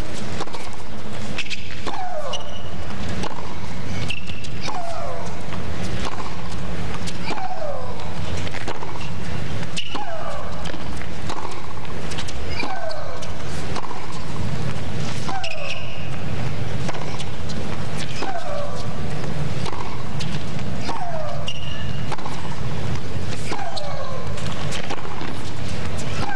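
A tennis rally: balls struck by racquets about every second and a half, with a woman player's long falling shriek on her own shots, roughly every two and a half to three seconds.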